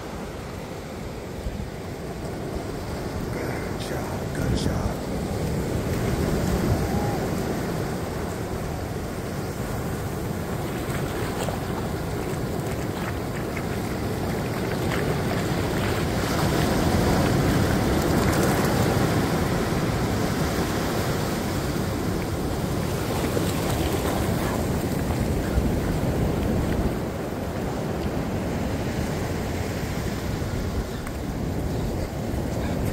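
Ocean surf breaking and washing up the beach, swelling and easing in waves, with wind buffeting the microphone.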